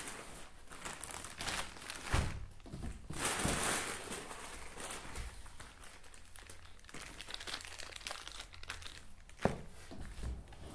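Plastic packaging crinkling and cardboard box flaps being handled while a boxed parts kit is unpacked, in soft, uneven rustles with a sharp knock near the end.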